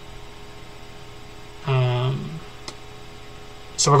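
Steady electrical mains hum in the recording, with a man's short voiced hesitation sound about two seconds in and speech starting right at the end.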